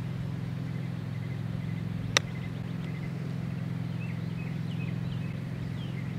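A single crisp click of a wedge striking a golf ball on a short chip shot, about two seconds in, over a steady low hum.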